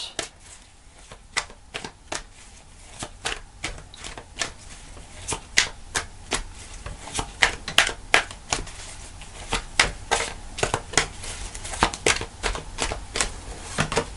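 A tarot deck being shuffled by hand: a run of short, sharp card clicks and slaps, a few a second, sparse at first and coming thicker from about five seconds in.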